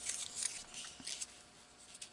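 Faint rustling and scraping of a scored paper strip being handled and laid against a paper-covered envelope, mostly in the first second and a half, fading toward the end.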